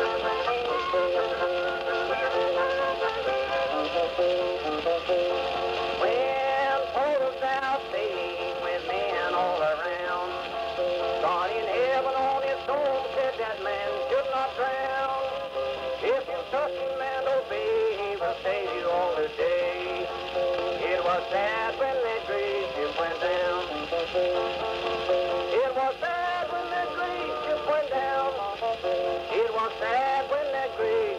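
Late-1920s Edison Blue Amberol cylinder record playing on an Edison cylinder phonograph: old-time music in an instrumental stretch between sung verses, with a steady hiss of surface noise under it.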